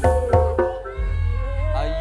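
Live dangdut koplo band music: several sharp drum hits in the first half second, then a held chord over a steady low bass with high notes gliding up and down.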